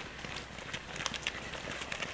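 Faint, irregular footfalls of runners going past.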